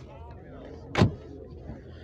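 A car door slammed shut once, about a second in: a single sharp, heavy thud.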